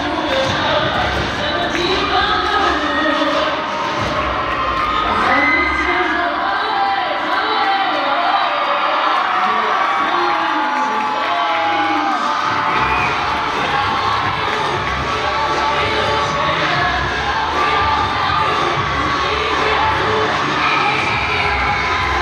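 A large crowd of high school spectators cheering and screaming loudly and without let-up, many voices at once with scattered shouts and whoops.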